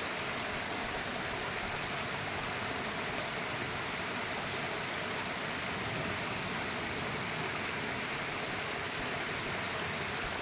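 A small waterfall running low after dry weather: a thin stream of water splashing over rocks into a pool, a steady even rush.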